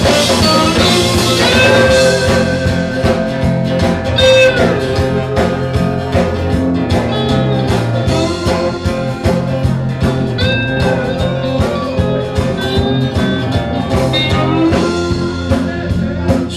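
Live blues-folk band playing an instrumental passage: lap steel slide guitar gliding between notes over bass and a drum kit.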